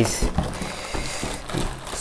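Cardboard box and plastic wrapping rustling and scraping, with a few short knocks, as a fan heater is pulled out of its packaging.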